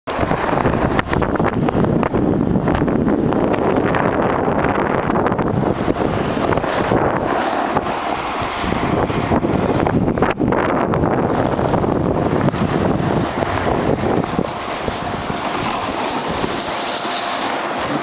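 Wind buffeting the microphone and the rush of sliding over packed snow on a ski slope: a loud, steady noise that eases a little near the end.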